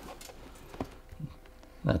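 Quiet small-room tone with a couple of faint short clicks about a second in, then a man starts speaking just before the end.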